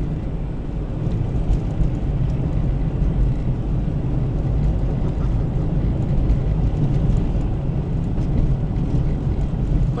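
A car driving along a city road at about 50 km/h, heard from inside its cabin: a steady low rumble of engine and tyre noise.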